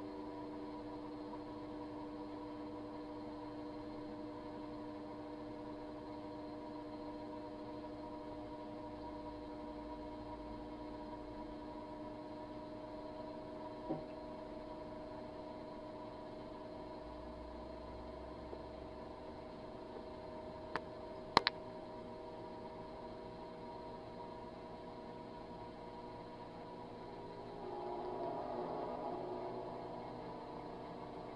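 Microwave oven running with a steady hum, an egg heating inside. A few sharp clicks break in: one in the middle and a louder pair about two-thirds of the way through.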